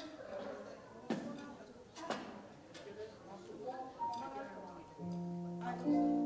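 Band on stage between numbers: two sharp knocks and faint talk, then about four seconds in a single held note, joined a second later by a sustained instrumental chord that slowly fades.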